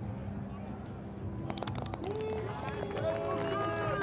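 People's voices talking over a steady low hum, with a few sharp clicks about a second and a half in.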